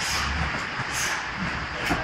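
Two grapplers scuffling on a vinyl gym mat: a few short rustling bursts, about a second apart, over a steady background noise.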